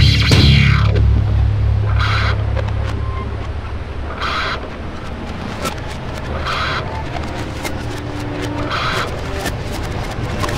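Ending of a rock song: the band stops on a final hit and a low chord rings on and slowly fades. A short noisy swell repeats about every two seconds over it.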